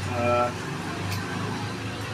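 A brief spoken syllable, then a steady low background hum with a couple of faint ticks.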